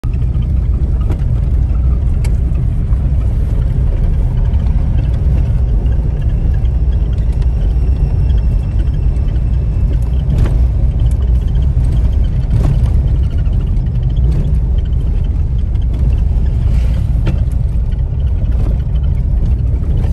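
A car driving, heard from inside the cabin: a steady low rumble of engine and road noise, with a couple of faint knocks from the road about ten and twelve seconds in.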